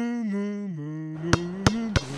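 A voice humming a slow tune that steps down in pitch note by note. Sharp clicks and knocks join in a little past the middle.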